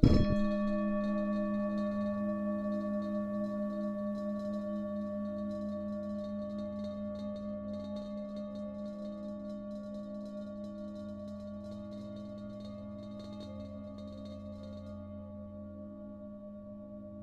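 A singing bowl struck once, then ringing with a slow, regular wavering as it fades over about fifteen seconds.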